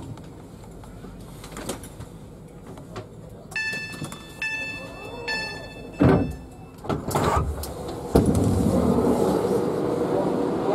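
Three electronic beeps about a second apart, each a short chord of high tones, over station background noise. A loud knock follows. From about eight seconds in, a steady, louder rushing noise.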